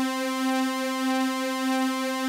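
A single sustained sawtooth note, around middle C, from a Korg Kronos synthesizer, played through the Polysix Ensemble chorus effect. It holds at a steady pitch with a slight slow wobble in level.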